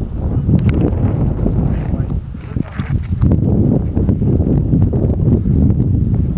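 Wind buffeting the camera's microphone: a loud, uneven low rumble that never lets up.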